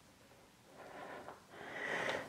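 A woman breathing audibly while exercising, during a kneeling push-up with dumbbells: two soft breaths in the second half.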